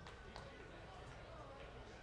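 Faint ballpark crowd ambience with distant murmuring voices and a couple of faint clicks.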